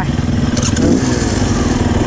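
Dirt bike engine idling steadily.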